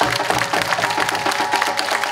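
Applause, many hands clapping quickly and unevenly, over music with a long held note.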